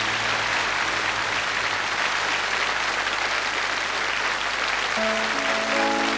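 Audience applauding, an even, steady clatter of clapping. About five seconds in, the orchestra starts playing again under the applause.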